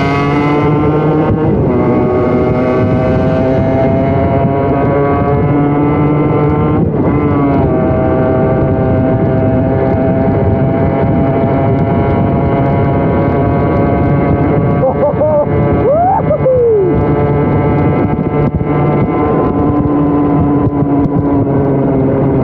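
Yamaha RD50DX's 50cc two-stroke single-cylinder engine pulling under load while riding, on its newly fitted HPI 2Ten electronic ignition. The pitch climbs steadily through the gears, dipping briefly at upshifts about a second and a half in and again about seven seconds in.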